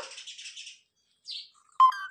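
Pet parrot making short chirping calls: a brief soft chirp a little past halfway and a sharper, louder chirp near the end.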